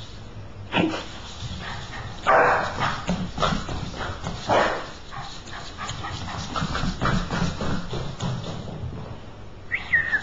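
Boston terrier giving a string of short barks and yips, the loudest about two and a half and four and a half seconds in.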